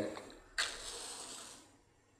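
A wooden matchstick struck against a matchbox about half a second in: a sudden scrape that flares into a hiss and fades away over about a second.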